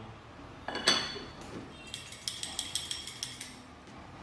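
A porcelain bowl clinks down onto its saucer about a second in. Then the covered bowl and saucer are shaken, rattling the game pieces inside in a quick run of ringing clinks, about six a second, for about a second and a half.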